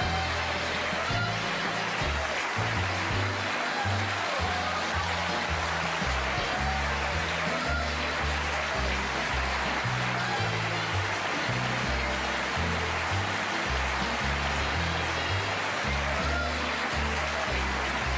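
Studio big band playing the show's closing music, brass over bass notes that step about twice a second.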